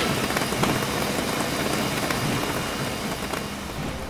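A steady rushing noise with a low rumble, slowly fading over the last second or so.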